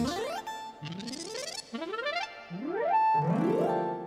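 Synthesizer tones from a MIDI sound module, played by a hand moving through a Soundbeam ultrasonic sensor beam. About five rising pitch glides come one after another, each ending on a held higher note, with the last one the loudest and longest.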